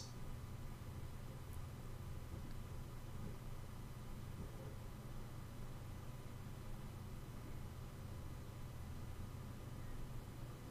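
Faint steady low hum of room tone, with no distinct clicks or handling sounds.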